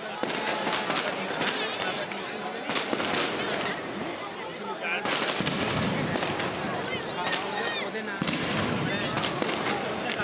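Aerial fireworks crackling and popping in many quick, irregular bursts, over the steady chatter of a large crowd.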